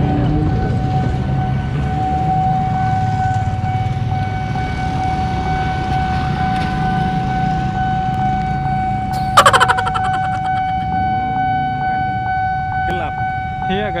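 Railway level-crossing warning alarm sounding a steady electronic tone over the low rumble of waiting motorcycles and cars. A short, loud, buzzing horn blast comes about nine seconds in.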